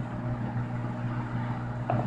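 A steady low hum with no other clear sound.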